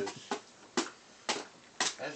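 Wrapping paper on Christmas presents being handled, four short crinkling rustles about half a second apart.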